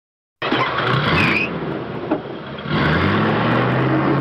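Truck engine running and revving. It starts abruptly about half a second in, dips slightly, then picks up again near the three-second mark.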